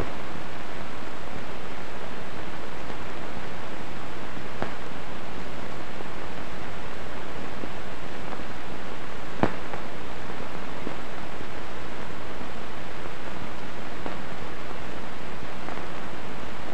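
Steady hiss of an old film soundtrack with no other sound on it, broken only by a faint click about nine seconds in.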